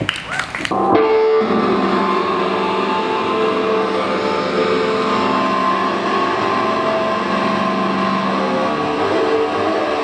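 Electric guitar played through an amplifier and effects, coming in about a second in with long held notes that ring on steadily. A few sharp knocks come just before it.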